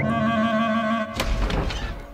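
Cartoon church bell ringing, several held tones sounding together, with a thud about a second in, after which the ringing fades away.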